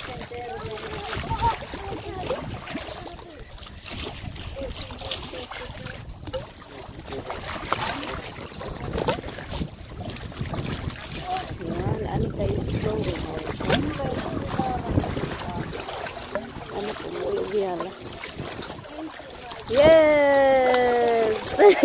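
Wind buffeting the microphone over small sea waves lapping and splashing against granite shoreline rocks.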